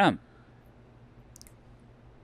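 A man's voice ending a spoken phrase with falling pitch, then a pause of faint room tone with one small, faint click about one and a half seconds in.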